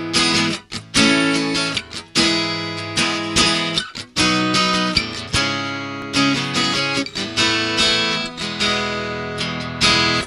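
Acoustic guitar strummed in chords, an instrumental intro with a strum about once or twice a second, each chord ringing and fading.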